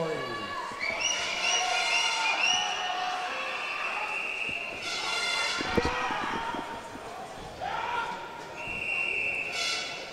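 Echoing voices at the pool deck, a thump about six seconds in, then a referee's long whistle blast near the end. That whistle is the signal for swimmers to step up onto the starting blocks.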